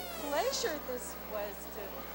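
Indistinct voices of people chatting, with pitch sliding up and down, louder in the first second and then dropping to fainter background chatter.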